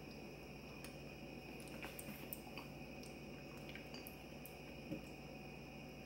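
Faint mouth sounds and small clicks of someone eating a spoonful of yogurt, with a slightly louder click near the end, over a steady low hum.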